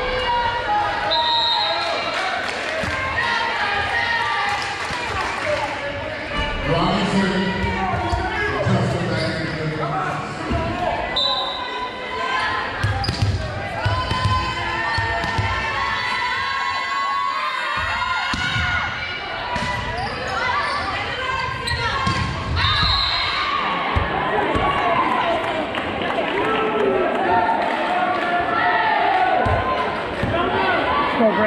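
Volleyball being played in an echoing gym: the ball is hit and bounced on the hardwood floor, with voices of players and spectators throughout. A few short high-pitched tones sound at about one, eleven and twenty-two seconds in.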